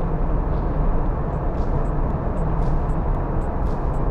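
Steady road noise of a car driving on a paved road, heard from inside the cabin: tyres and engine together as an even, deep rumble.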